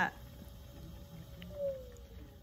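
Electric potter's wheel spinning with a low steady hum while clay is centered on it. A faint whining tone swells and falls slightly in pitch near the end.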